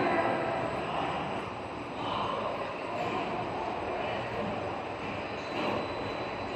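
Steady mechanical hum and hiss of running factory machinery, with a faint high steady tone over it.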